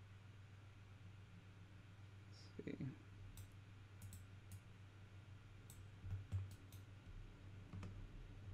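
Faint, scattered clicks of a computer mouse and keyboard over a low steady hum, coming in quick runs in the second half.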